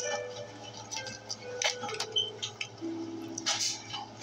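Foil Pokémon booster packs crinkling and tapping as they are handled and stood upright: a scatter of short crinkles and light taps.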